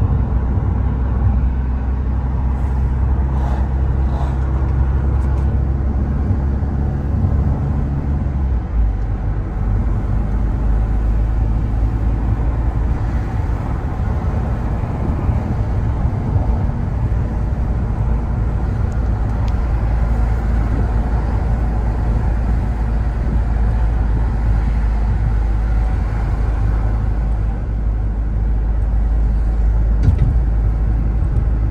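Car cabin noise while driving: low engine hum and steady tyre and road rumble. The engine's tone drops away about eight seconds in, leaving an even road rumble.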